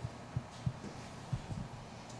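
Steady low room hum with a few short, soft low thumps, about five in all, spread unevenly through the moment.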